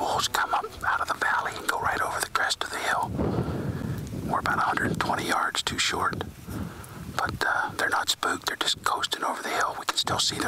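A man whispering, in short phrases with brief pauses.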